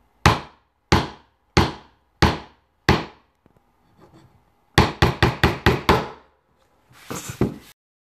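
Sharp knocks: five evenly spaced, about two-thirds of a second apart, then a quick run of about eight.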